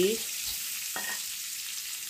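Minced garlic sizzling as it fries in hot oil and margarine in a wok, with a spatula stirring it around. The sizzle is a steady high hiss.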